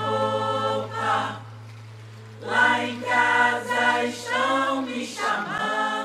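Chorus of voices singing a samba refrain over a held low note, which stops near the end. The singing breaks off briefly about a second and a half in, then comes back.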